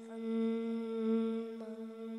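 Vocal humming: one long, steady held note that swells in loudness.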